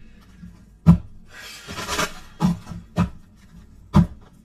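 A deck of tarot cards being shuffled and handled: a rasping rustle about halfway through, with several sharp taps before and after it.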